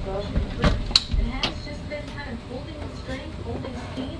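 A voice talking quietly in the background, with a few sharp clicks and knocks and a low thump in the first second and a half.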